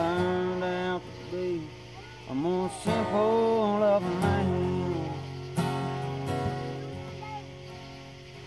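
A man singing an original country song, holding long notes, over a strummed acoustic guitar. About two thirds of the way in, the voice stops and the guitar strums ring on alone, fading.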